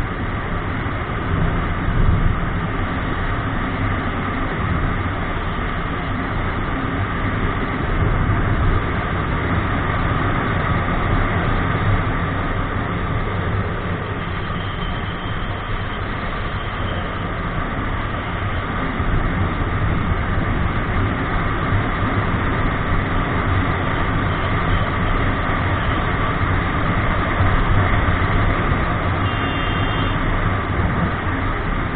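Motorcycle riding at a steady speed: engine and wind noise on the bike-mounted camera's microphone, even throughout.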